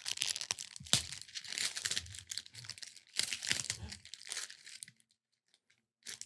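Advent calendar door and its small packet being torn open and handled: a run of tearing and crinkling with a sharp snap about a second in, stopping about five seconds in.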